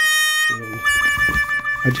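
Background music holding one long high note, with a man's voice faintly underneath and a few words near the end.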